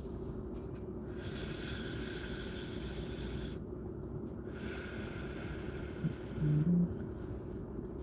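A man drawing on a freshly lit smoke: a long breathy inhale of about two and a half seconds, then a softer exhale, over a low steady hum.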